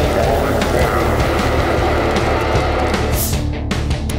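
Loud heavy-rock intro theme music, continuous, with a steady low beat. About three seconds in, a bright swoosh rises over it and the music breaks off for an instant before carrying on.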